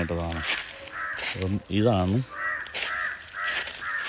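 A bird giving a run of short, evenly repeated calls, with a man's voice briefly heard over it.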